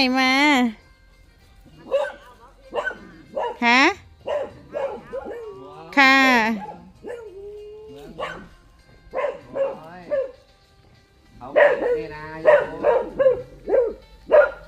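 Beagles barking and yipping in short bursts, quickest and loudest near the end.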